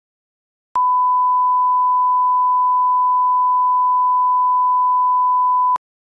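Steady 1 kHz line-up test tone, the reference tone that goes with broadcast colour bars. It starts with a small click just under a second in, holds one unchanging pitch for about five seconds, and cuts off with another click near the end.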